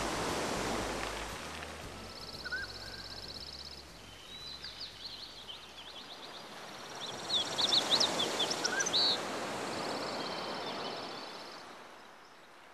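Nature ambience of sea surf washing in slow swells, with small birds chirping and trilling, loudest in a burst of chirps about seven to nine seconds in. A low held music tone fades away in the first half.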